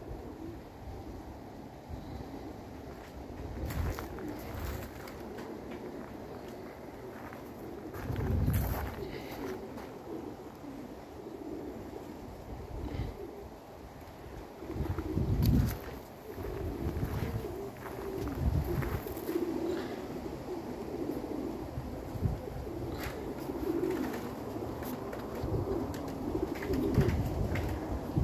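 Domestic pigeons cooing over and over, with gusts of wind buffeting the microphone several times.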